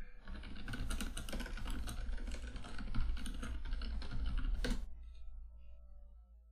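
Rapid typing on a computer keyboard, a quick run of keystrokes for about four and a half seconds that ends with one harder keystroke.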